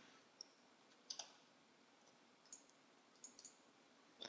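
Faint computer mouse clicks over near silence: a single click, a double click, another single and a close pair of clicks.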